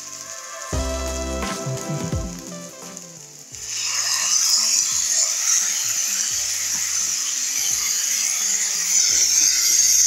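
Sliced button mushrooms sizzling as they fry in hot oil, with occasional stirring. The sizzle starts suddenly a few seconds in, after a stretch of soft background music.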